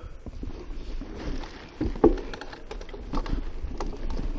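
Mountain bike rolling along a sandy, leaf-covered dirt trail: a steady low rumble from the tyres and wind on the microphone, with scattered rattles and knocks from the bike. The loudest knock comes about two seconds in.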